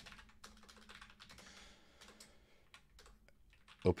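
Typing on a computer keyboard: a quiet run of irregular keystrokes as a short name is typed.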